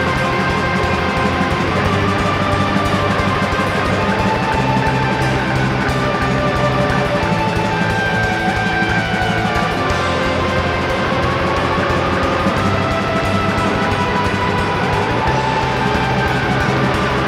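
Live rock band playing loud and steady, electric guitars holding sustained notes over bass and drums.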